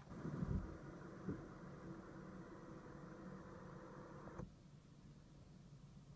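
Power sunroof of a BMW 3 Series opening: its electric motor gives a faint, steady whir for about four seconds, then stops abruptly.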